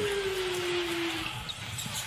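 A voice holding one long, slowly falling note that fades out a little over a second in, over the steady noise of an arena crowd.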